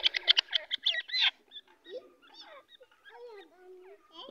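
A female francolin (teetar) squawking as a hand grabs it, with scuffling in the dirt. The calls are loud and rapid for about the first second and a half, then softer, lower calls continue.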